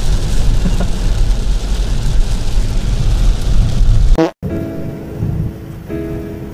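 Heavy rain pounding on a moving car's roof and windshield with tyre and road noise, heard from inside the cabin. It cuts off suddenly about four seconds in, and background music with steady held notes follows.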